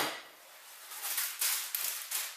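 A sharp knock as a water bottle with a metal cup is set down on the wooden floor, then rustling and scraping as kit is rummaged out of a backpack pouch.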